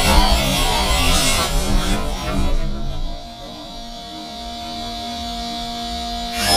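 Background music with guitar; it is busy and loud for the first three seconds or so, then drops to a quieter stretch of held notes.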